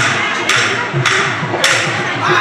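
Bihu dhol drums played in a fast, driving rhythm of low strokes, with sharp, bright strikes about every half second.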